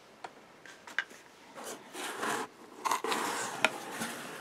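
Cardboard mailer box being opened: a few faint clicks, then from about a second and a half in, cardboard rubbing and scraping as the tucked lid is worked free and lifted, with a couple of sharper snaps.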